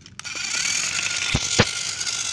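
Battery-powered toy Thomas engine switched on, its small motor and gears whirring steadily, with two sharp clicks about a second and a half in.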